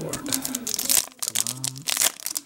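Foil wrapper of a Yu-Gi-Oh booster pack crinkling and being torn open by hand, a quick run of sharp crackles.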